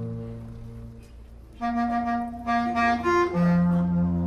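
Free-improvised music led by a bass clarinet playing long held notes. A quieter low tone fades in the first second, then loud held notes come in about one and a half seconds in, shift pitch a few times and settle onto a lower note near the end.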